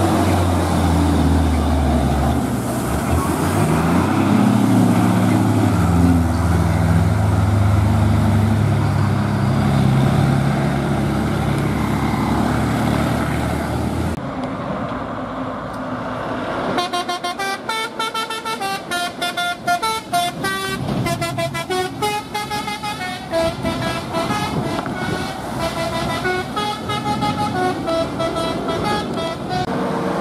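Heavy diesel truck passing with a deep engine rumble. After a cut about halfway through, a multi-tone musical truck horn sounds a stepping, melody-like run of notes for much of the rest.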